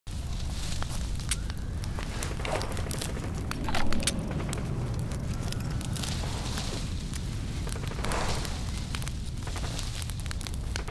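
A large fire burning, with sharp crackles and pops over a steady low rumble. There is a louder rushing swell about four seconds in.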